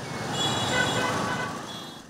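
Street traffic of motorcycles and cars running past. A vehicle horn sounds through the middle, and the traffic noise swells and then fades.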